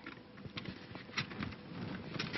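Faint handling noise of foam core board pieces being held and pressed together, with a few light clicks and taps.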